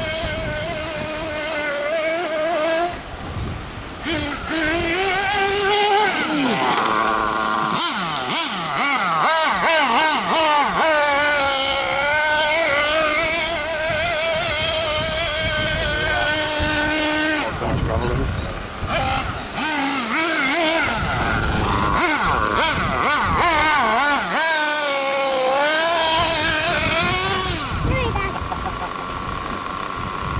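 Nitro RC buggy engine revving in a high pitch, its note rising and falling again and again with the throttle as the buggy climbs a steep dirt slope.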